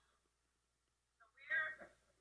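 One short, faint vocal sound, a person's voice from a video clip played back over the hall's speakers, about a second and a half in after a near-silent pause.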